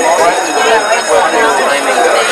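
Several voices talking at once, overlapping chatter with no one voice standing out, over a steady high-pitched whine.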